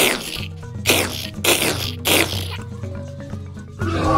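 Background music with a steady low bass, cut by four short hissing strokes that each fall in pitch, spread over the first two and a half seconds.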